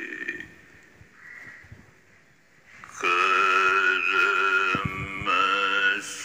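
A man chanting slowly in long, drawn-out held notes. The chanted line fades out in the first half-second, there is a pause of about two and a half seconds, and a new long held line starts about three seconds in.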